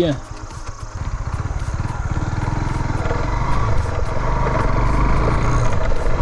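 Motorcycle engine pulling away and gathering speed, its rapid firing pulses getting steadily louder.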